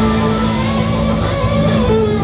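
Live instrumental rock band playing at full volume, with electric guitars holding sustained notes over bass and drums. In the second half a lead line glides up and then back down in pitch.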